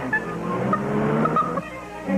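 Cartoon car engine sound effect running and rising steadily in pitch as the car speeds up, over background music.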